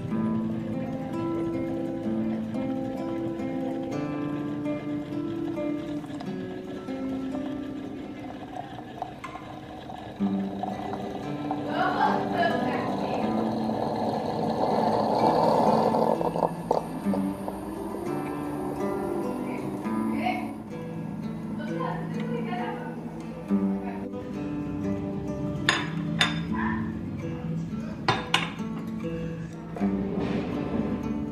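Background music throughout. Partway through, an Imusa electric espresso maker hisses for a few seconds as it brews coffee into its glass carafe, and near the end there are a few sharp glassy clinks.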